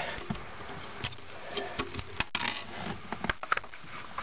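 Irregular small clicks and light rattles of fingers handling the wire connectors on a floor-mounted headlight dimmer switch.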